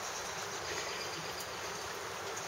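Steady outdoor background hiss with no distinct sounds standing out.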